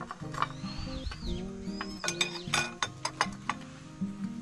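Background music with steady held notes, and in the second half a quick run of sharp light clicks from a plastic shaker cap being twisted onto a glass jar and handled on a glass tabletop.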